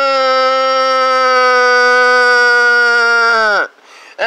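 A person's voice holding one long, steady vocal note for nearly four seconds. Near the end the note slides down in pitch and breaks off.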